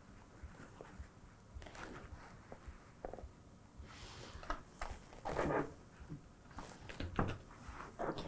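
Faint handling of a quilted fabric pouch and plastic sewing clips on a cutting mat: the fabric rustles and shifts, with a few short scrapes and light clicks as the clips go on, the loudest rustle about five and a half seconds in.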